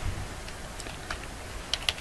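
Computer keyboard typing: a few separate keystrokes, then a quick run of them near the end.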